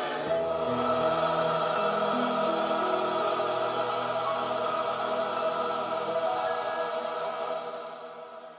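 Choir singing a long sustained closing chord that fades out near the end.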